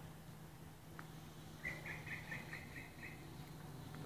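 A quick run of about eight high, evenly spaced chirps lasting just over a second, an animal's call, over a steady low hum.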